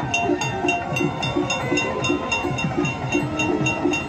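Rhythmic temple percussion for an aarti: steady low drum beats, about three a second, with a higher ringing struck in time at a quicker pace.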